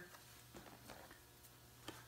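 Near silence, with a few faint soft scrapes and ticks and one small click near the end, from a flexible plastic putty board being pushed lightly over wet silicone on a leather seat.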